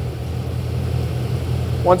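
2015 Chevrolet Camaro SS's 6.2-litre V8, fitted with a cold air intake, idling smoothly and steadily, heard from the open engine bay.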